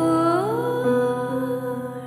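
Mellow piano-pop song. A woman's voice slides up to a held note about half a second in, without clear words, over sustained piano accompaniment.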